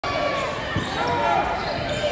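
Basketball game in a gym: sneakers squeaking on the hardwood court in several short rising-and-falling squeals and a ball bounce about a second in, over a steady babble of crowd chatter.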